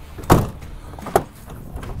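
The 2020 Ram 1500's multi-function tailgate is pushed shut and latches with a single thud about a third of a second in. A shorter, sharper click follows a little over a second later.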